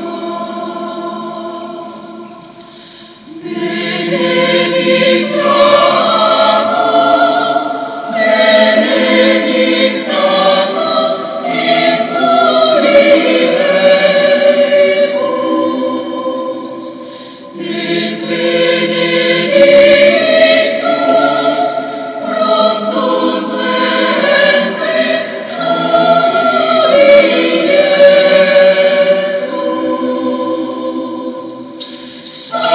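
Choir singing the closing hymn of a Mass, in long sung phrases with a short break about three seconds in and another around the middle.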